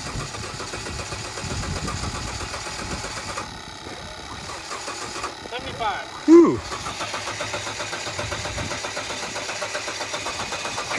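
An old Mitsubishi SUV's engine cranking over and over on its starter without catching while it is fed diesel through the intake. A short sliding call or shout is heard about six seconds in.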